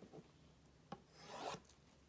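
Faint rubbing of hands on a cardboard trading-card box as it is picked up and handled, with one small tap about a second in.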